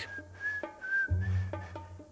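A thin whistled tone, wavering a little in pitch, held for about a second and a half, with a low boom coming in about a second in. Together they work as a mic-drop sound effect.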